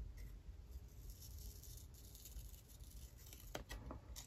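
Near silence, with a couple of faint snips from small scissors cutting a paper sticker near the end.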